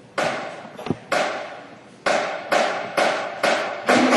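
High school drumline hits echoing in a gymnasium, at first about a second apart, then speeding up to about two a second as the band's percussion piece gets under way.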